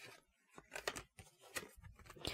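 Tarot cards handled quietly in a small room: two soft clicks, one near the middle and one near the end, in an otherwise hushed pause.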